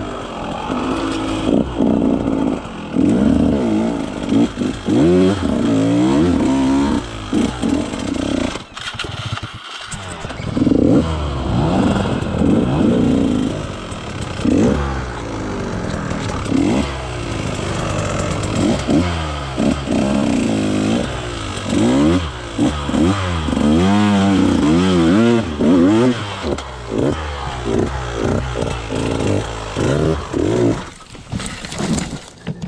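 KTM 150 XC-W single-cylinder two-stroke enduro engine under riding load, revving up and down repeatedly in short bursts of throttle. It briefly eases off about nine to ten seconds in, then picks back up.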